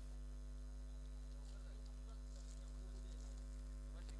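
Faint, steady electrical mains hum, a low drone with a few higher steady tones, unchanging throughout and with no other sound over it.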